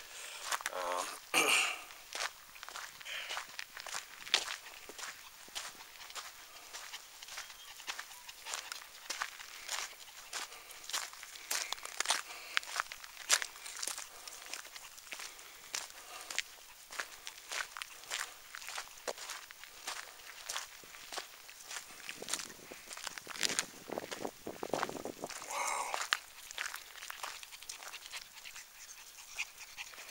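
Footsteps crunching and scuffing on a stony dirt road at a steady walking pace.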